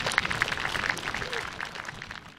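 A crowd applauding, a dense patter of hand claps that thins out and fades toward the end.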